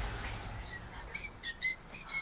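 A string of short, high, bird-like chirps, a few a second, beginning about half a second in as a low rumble fades away.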